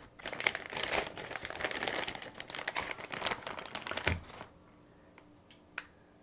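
Plastic bag crinkling and rustling, with many small clicks, as magazines and the bagged pistol are handled in a soft case. It goes on for about four seconds and ends in a soft knock, followed by one click near the end.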